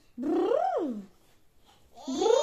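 One drawn-out, meow-like call that rises and then falls in pitch, lasting under a second and starting just after the beginning.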